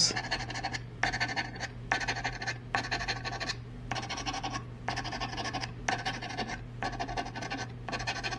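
A scratch-off lottery ticket being scratched with a coin-shaped scratcher, the coating rasping off in a run of strokes at roughly one a second with short pauses between them.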